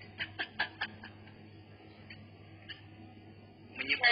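Brief, quiet giggle: about five quick pulses of laughter in the first second, then a couple of faint ones, heard through compressed video-call audio.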